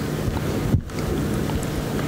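Steady rushing noise of air on a handheld microphone held close to the mouth, with a short break a little under a second in.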